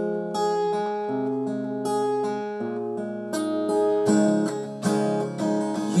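Solo acoustic guitar playing: picked notes and chords ringing and changing about every half second, then strummed more sharply in the last few seconds.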